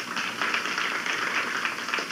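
Studio audience applauding: a steady, even clatter of many hands.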